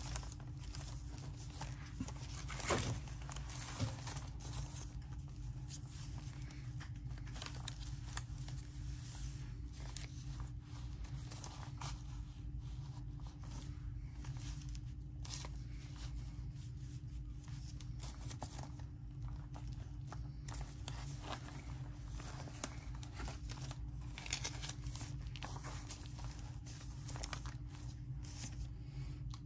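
Quiet paper rustling and crinkling as a handmade journal's pages and cover are handled and thread is drawn through the signature's holes for a pamphlet stitch, with a few soft clicks about three seconds in, over a steady low hum.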